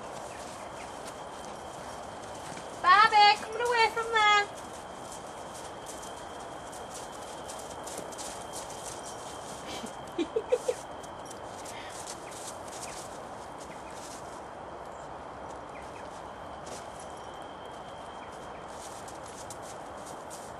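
Welsh pony whinnying: one loud, quavering call of about a second and a half, falling in pitch, about three seconds in. A few short, softer calls follow near the middle.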